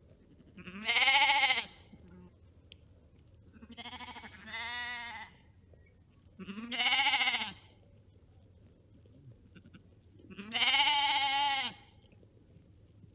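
Sheep bleating: five baas, each a stack of wavering, arching pitch. A loud one about a second in, two shorter, quieter ones back to back around the middle, then two more loud ones near seven seconds and near the end.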